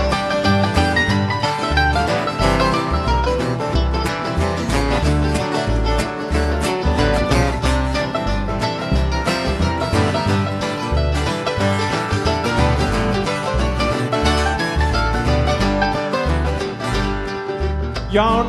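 Live acoustic string band playing an instrumental break in a country/bluegrass style: strummed and picked acoustic guitars over upright bass and hand drums, with a steady bass pulse.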